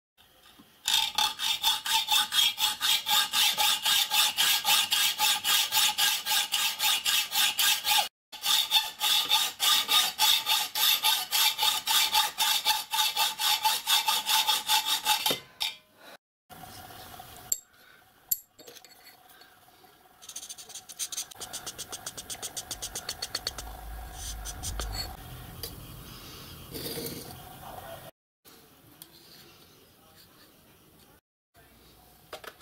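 Hand hacksaw cutting a flat steel bar clamped in a bench vise, with fast, even back-and-forth strokes. The sawing breaks off briefly about 8 s in, and the strokes are fainter and sparser in the second half.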